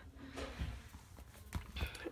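Soft handling knocks of a hardcover notebook being moved and turned over by hand on a wooden floor, with a few low thumps in the second half.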